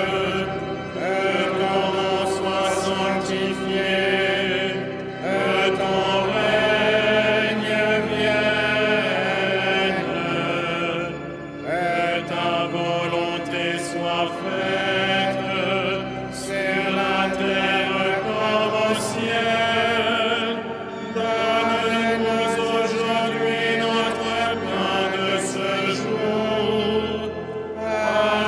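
Congregation and choir singing a slow liturgical chant in phrases of a few seconds each, with short pauses for breath between them. Sustained low notes are held beneath the voices.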